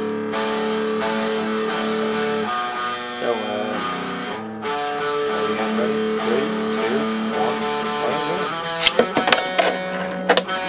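Guitar music with held, strummed notes. Near the end, a quick run of sharp plastic clicks and knocks as a Beyblade is ripcord-launched and lands spinning in a plastic stadium.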